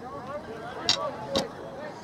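Voices calling out across an outdoor soccer game, with two sharp knocks about half a second apart near the middle that are the loudest sounds.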